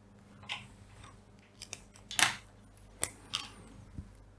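Fineliner pen and hand moving over a sheet of paper: a few short, quiet scrapes, the loudest about two seconds in.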